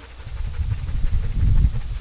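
Low, uneven wind rumble buffeting the microphone, swelling about one and a half seconds in.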